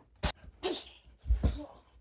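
A sharp click, then a short breathy vocal burst like a forced exhale or sneeze, then heavy thumps as the camera is knocked and swung around.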